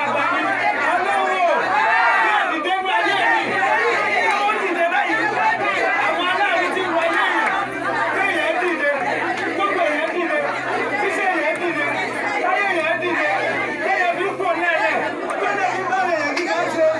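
A man's voice preaching or praying into a microphone, continuous and unbroken, with other voices talking underneath.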